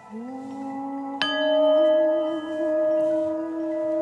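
A singing bowl struck about a second in and left ringing, its tones swelling and wavering slowly, over a low steady tone that sounds from the start.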